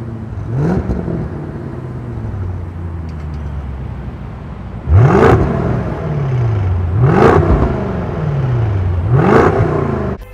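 2023 Range Rover SV's twin-turbo V8 free-revving through a QuickSilver valved sport exhaust, each rev rising quickly in pitch and falling away slowly. Under a second in comes one quieter rev with the exhaust valves closed. About five seconds in the valves open and three much louder revs follow, about two seconds apart.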